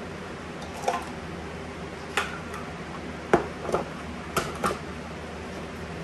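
Green plastic measuring cups clacking against each other as they are handled and sorted out of a nested set: about six short, sharp clicks spread over the few seconds.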